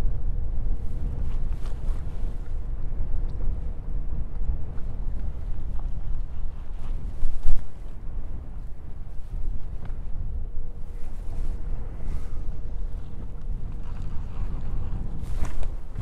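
Wind buffeting the microphone on an open boat deck, a heavy uneven low rumble, with a faint steady hum and a few small knocks; one louder gust or bump a little past the middle.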